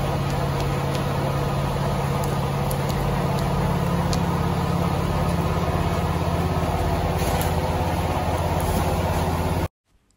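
A small engine running steadily with a low, even hum, which cuts off suddenly near the end.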